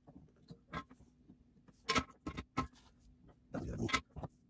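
Light, scattered clicks and taps of a plastic remote-control housing and its circuit board being handled and fitted together, the sharpest tap about two seconds in. A short muffled rustle comes just before the end.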